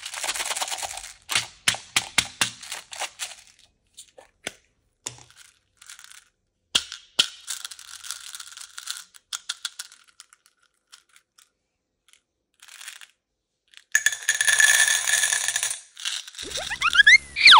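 Small green balls rattling and clicking inside a clear plastic tub as it is handled and opened, with scattered sharp clicks. Near the end they are poured in a dense, louder rush into a metal muffin tin.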